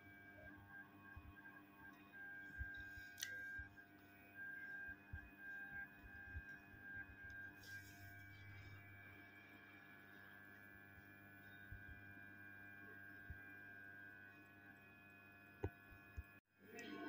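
Near silence: a faint steady electrical hum, with scattered soft taps and a couple of sharp clicks from tweezers setting a small chip onto a laptop motherboard.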